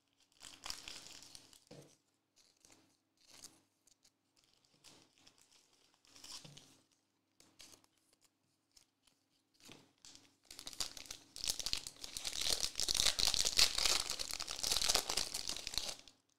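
Trading-card pack wrapper being torn open and crinkled by hand: scattered faint rustles and taps at first, then a dense, continuous crinkling from about ten seconds in.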